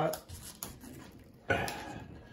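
Hands handling a pair of sealed lead-acid battery blocks and their paper label: small clicks, then a sharper rustle about one and a half seconds in as the label is pressed into place.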